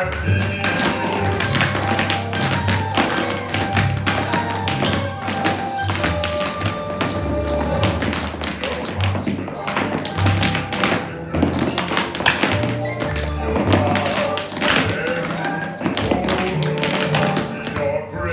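Many children's tap shoes clattering unevenly on a studio floor in a group tap routine, over recorded instrumental music with a steady bass line.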